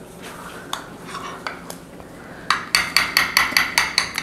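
Light clinks and taps of kitchen utensils and dishes. About two and a half seconds in, they give way to a quick, even run of scraping strokes, about six a second.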